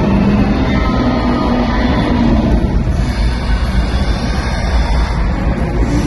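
Loud, steady low rumble of the show's sound effects over arena speakers, with music underneath.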